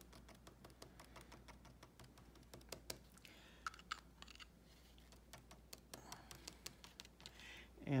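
Faint, irregular light clicks and taps from a small mist-spray ink bottle being handled and its dip tube dabbed against the cardstock to drop ink spots, with a couple of brief soft rustles.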